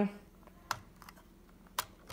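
Two short plastic clicks about a second apart, from a hand handling a LEGO brick camper van, over faint room tone.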